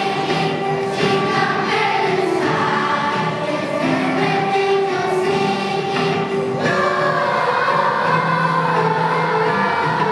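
Children's school choir singing, with long held notes.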